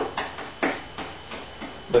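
Short brush strokes scrubbing epoxy into fiberglass tape on a wooden hull seam, about three strokes a second, wetting out the cloth.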